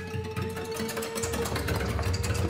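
Contemporary chamber ensemble music: a single high note held steady over a low, rumbling mass of sound, with rapid fine clicking figures flickering above.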